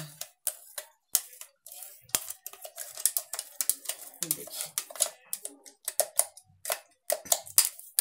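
Spoon scraping and knocking inside a steel mixer-grinder jar as thick ground lemon pulp is emptied out into a pan: a run of irregular clicks and scrapes.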